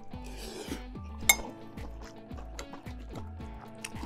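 Background music, with a metal utensil clinking once against a ceramic plate about a second in.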